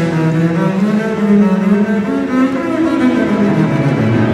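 Solo double bass played with the bow, carrying a continuous melodic line, with a small string orchestra of violins and cellos accompanying.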